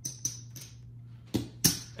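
Casino chips clicking together as they are picked up, stacked and set down on the felt: a few sharp clicks, two near the start and two more about a second and a half in, over a low steady hum.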